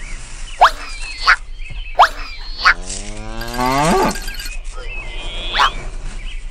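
Cartoon sound effects: short, quickly rising squeaky chirps about every two-thirds of a second, and about three seconds in a drawn-out rising pitched call lasting about a second.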